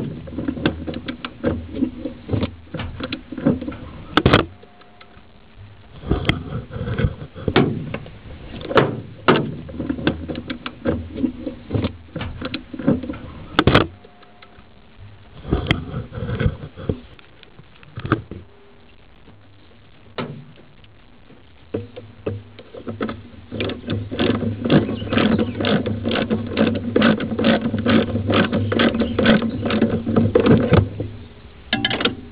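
Ratcheting wrench turning a deep socket to unscrew the PCV valve: scattered metal clicks and knocks of the tool, then a fast, steady run of ratchet clicks over the last several seconds.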